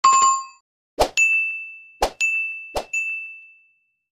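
Stock sound effects of a subscribe-button and notification-bell animation. A bright chime comes first, then three sharp clicks, each followed by a ringing bell ding that fades away.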